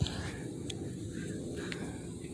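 A light knock as the angle-cut end of a wooden deck board is set against the framing to check the miter, then two faint ticks over a low steady rumble of wind and handling on the microphone.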